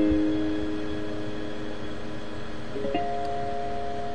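Keyboard chord ringing out and slowly fading, then a second chord struck about three seconds in and held steady.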